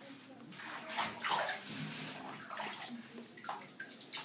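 Water splashing and sloshing in a bathtub as a dog is scrubbed and rinsed by hand, irregular and starting about half a second in.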